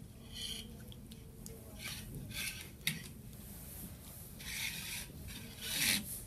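Small plastic stemmed cups being slid across a tabletop to rearrange them, in several short scraping rubs. There is one sharp knock about three seconds in as a cup is set down.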